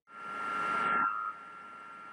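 Electronic hiss with a thin steady high-pitched whine from the recording chain. A louder rush of noise swells in first and drops off abruptly about a second and a quarter in, leaving a steady lower hiss.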